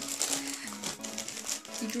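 Packaging crinkling and rustling in short bursts as it is handled, over background music with steady held notes.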